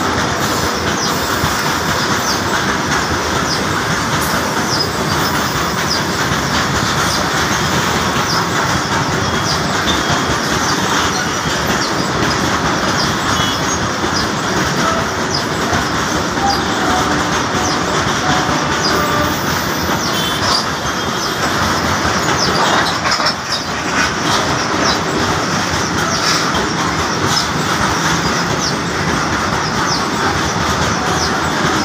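Long freight train of hopper wagons rolling past close by on a short steel girder bridge: a steady, loud rumble and clatter of wheels over the rails. Short, high-pitched wheel squeals come and go throughout.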